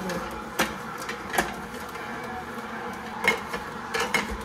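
Vertical slow juicer running, its auger crushing apple pieces pushed down the chute: steady motor noise broken by a few sharp cracks as the apple breaks up, the loudest about three seconds in.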